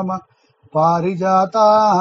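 A man's voice chanting a line of devotional verse in a measured, sustained recitation tone, with long held syllables on a near-steady pitch. There is a short pause of about half a second shortly after the start.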